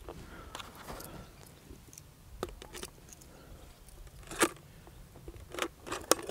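A plastic bottle being handled while small items are put into it: quiet scraping with a few short clicks and knocks, the sharpest about four and a half seconds in.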